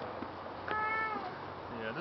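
A small child's high-pitched wordless whine, about half a second long, sliding slightly down at the end. An adult's voice begins just before the end.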